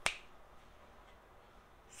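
A single finger snap right at the start, then quiet room tone.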